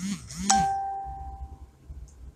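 A single bell-like ding, struck once about half a second in, ringing out and fading over about a second.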